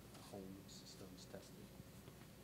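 Near silence: the room tone of a hall, with a faint voice briefly heard off-microphone.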